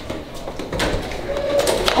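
An interior door's lever handle and latch clicking as the door is pushed open, with sharp clicks in the middle and a couple more near the end. A short steady low hum sounds just before the last clicks.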